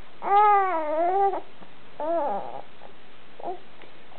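Baby babbling: one long drawn-out vocal sound that wavers in pitch, starting just after the beginning and lasting about a second, then a shorter one about two seconds in and a brief faint one near the end.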